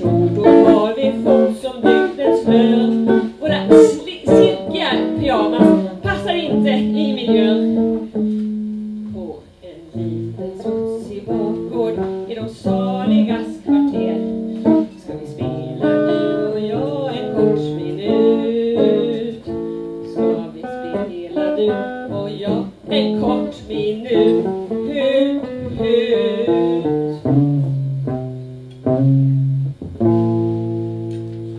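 A woman singing a Swedish song live, accompanied by a man playing guitar.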